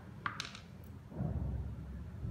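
A few faint light clicks of a small metal fiber-optic adapter being handled, then a soft low rumble of handling noise about a second in.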